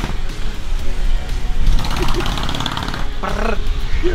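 Background music, with a laugh at the start and brief bits of voice later.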